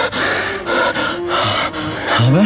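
A man breathing hard in a run of gasping breaths, over soft held background music.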